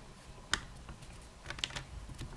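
Small Phillips screwdriver turning out a metal screw that holds a laptop's LCD panel in its frame, giving faint clicks: one sharp click about half a second in and a quick run of clicks near the end.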